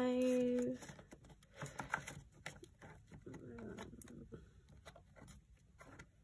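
Paper cash envelopes flipped through by hand in a plastic box: a run of light rustles and small ticks. A short held vocal sound opens it and is the loudest part.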